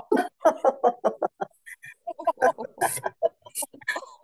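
A woman laughing deliberately on the vowel "O", a quick staccato run of ho-ho-ho bursts as a laughter-yoga exercise, with a short pause in the middle and a couple of sharp breaths near the end.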